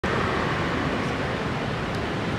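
Steady background noise of outdoor traffic, an even rushing sound with no distinct events.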